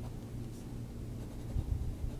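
Pilot Metropolitan fountain pen's medium steel nib writing on smooth Rhodia dot pad paper: a faint, soft scratch of nib on paper. A soft low thump comes near the end.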